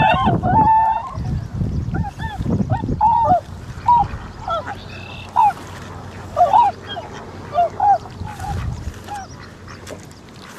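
A flock of swans calling: many short calls, each rising and falling in pitch, crowded together over a low rumble in the first few seconds, then spaced out and fading toward the end.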